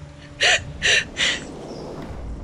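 A woman crying: three short gasping sobs in quick succession, starting about half a second in.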